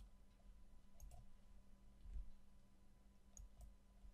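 Near silence with a few faint computer mouse clicks, a pair about a second in and another pair near the end, over a low steady hum.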